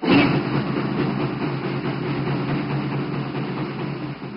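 A band starts playing loud, dense music abruptly and keeps going at an even level: the national anthem that closes the ceremony.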